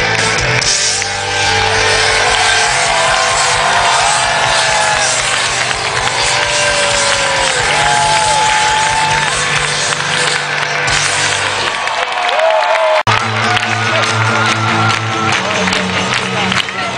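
Live rock band on a stadium stage, recorded from within the crowd: an electric guitar plays bending lead lines over bass and drums, with crowd noise beneath. The sound drops out for an instant about thirteen seconds in.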